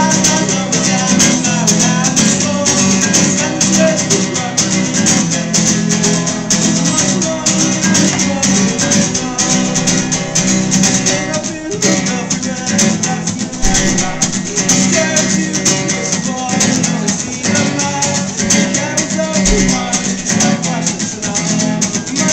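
Acoustic guitar strummed in a quick, steady rhythm, solo live playing.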